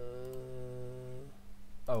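A man's drawn-out hesitation sound, an 'uhhh' held at one steady pitch for about a second and a half while he puzzles over an error, then a short 'oh' of realisation near the end.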